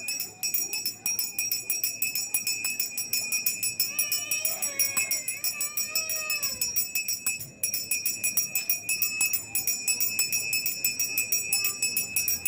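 Brass puja hand bell rung rapidly and without pause, a steady high ringing, during worship before a deity. Faint singing comes through briefly in the middle.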